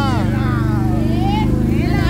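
Motorcycle engine running steadily at low speed, with people talking over it.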